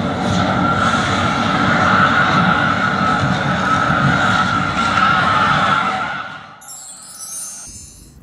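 Artificial wave-pool waves crashing over a large crowd of children, with the crowd shouting and screaming over the rush of water. It fades away about six seconds in.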